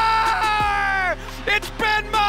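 A TV hockey play-by-play announcer's long, drawn-out shout of "Score!", held on one pitch and falling away about a second in, followed by shorter excited shouts, over steady background music.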